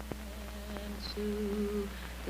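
Quiet wordless humming: a low note is held, and a little past a second in a higher note joins it and the sound grows slightly louder.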